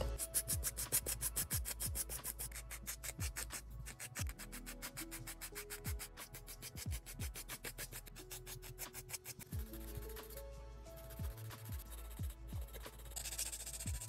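Coarse 80/80-grit nail file rasping back and forth across clear plastic nail tips in quick strokes, several a second. The strokes thin out about two-thirds of the way through and pick up again near the end.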